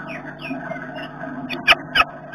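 Small bird chirps and squeaks, short and high with quick pitch slides, over a steady low hum, with two sharp clicks close together near the end.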